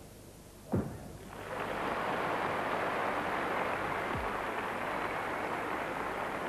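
A single thud of a gymnast landing her vault on the mat, then an arena crowd applauding steadily.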